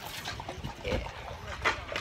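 Wind buffeting the phone's microphone in a low, steady rumble, with a single spoken "yeah" about a second in.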